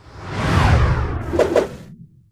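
Whoosh sound effect for a logo animation: a rush of noise that swells up with a falling sweep, then two short hits about a second and a half in, fading out near the end.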